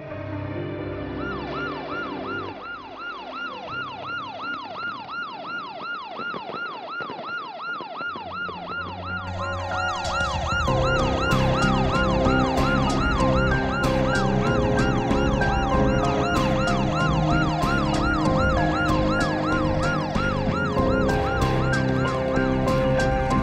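Police car siren in a fast yelp, its pitch sweeping down and back up about three times a second. About ten seconds in, louder background music comes in under it.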